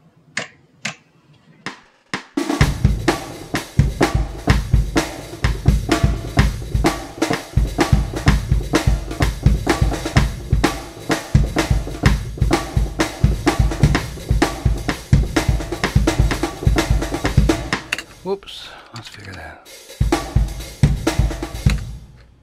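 Sampled drum kit played from a MIDI keyboard in a steady groove of kick, snare, hi-hat and cymbals at 127 beats per minute. A few click-track clicks come first, the drums come in about two seconds in, and there is a brief break near the end before the groove resumes.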